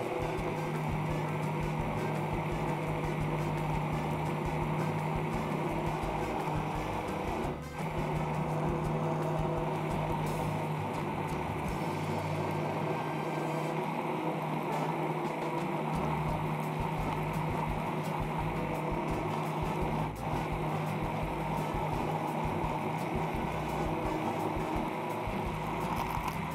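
Immersion (stick) blender motor running steadily while puréeing a red-berry purée with gelatin in a tall plastic beaker, a constant hum that dips briefly twice, about 8 and 20 seconds in.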